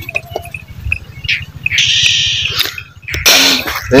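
A cobra hissing defensively as it is handled: one hiss lasting about a second around the middle, then a second, harsher burst of noise shortly before the end.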